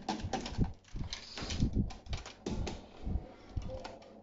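Hard plastic toy belt parts, the DX Swordriver buckle and its red plastic strap, handled and fitted together: a run of irregular clicks, knocks and rattles.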